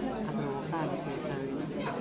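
Background chatter of café guests talking at several tables at once, with a short sharp click near the end.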